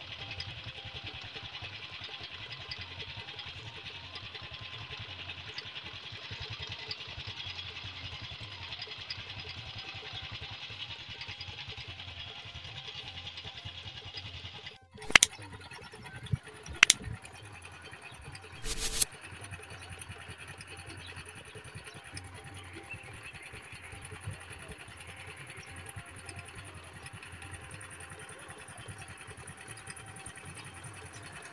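A small engine runs steadily with a low pulsing under a constant hiss. About 15 s in the sound cuts abruptly, a few sharp knocks follow over the next few seconds, and then a high steady whine joins the running engine.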